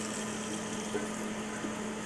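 Catfish fillets frying in Crisco shortening in a lidded cast iron skillet: a steady sizzle of hot grease, muffled by the lid, over a faint steady hum.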